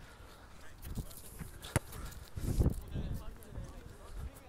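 Quiet open-air pitch ambience with distant, indistinct voices of players, and a single sharp knock a little under two seconds in.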